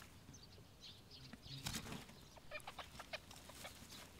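Faint, scattered rustles and light ticks of young rabbits moving about on the straw and earth of their burrow, with one slightly louder scuffle partway through.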